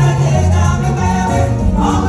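Gospel song: a woman singing into a microphone over loud band music, with other voices singing along.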